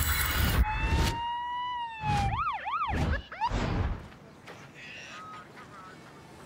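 A police siren sounds as the title music cuts off. It gives one long, slowly gliding wail, then two quick up-and-down sweeps. It drops away after about four seconds into a faint outdoor background.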